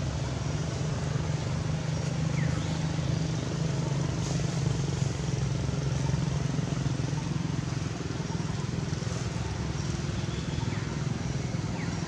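Steady low engine rumble of motor traffic, such as a motorcycle on the road, over outdoor ambience.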